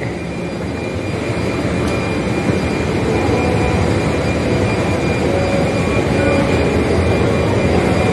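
Steady mechanical rumble and hiss of a moving escalator, heard while riding it through a shopping mall's background noise, with a faint high steady tone.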